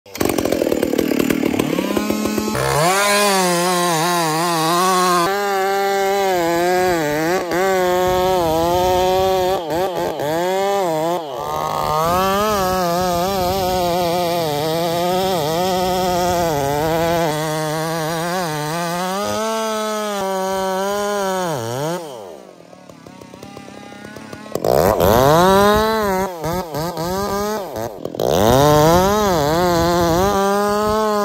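Two-stroke chainsaw cutting into a cottonwood trunk, running at high revs with its pitch wavering up and down as the chain loads in the cut. About 22 seconds in it eases off and goes quieter for a couple of seconds, then revs back up and cuts on.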